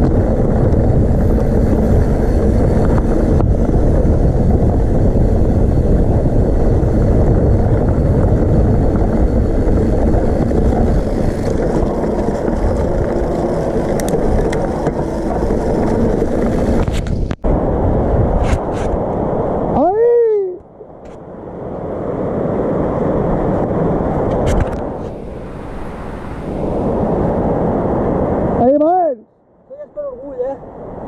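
Wind rushing over the camera and the rumble of mountain bike tyres rolling down a rough dirt and gravel trail. The noise cuts off abruptly about two-thirds of the way through. Quieter rolling noise follows, with two brief drawn-out vocal calls.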